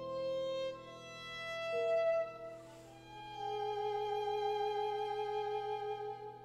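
A Giovanni Grancino violin (c. 1700–1705) playing slow, long-held notes over quietly sustained Bechstein grand piano tones. The sound swells to a peak about two seconds in, then a long note is held through the second half.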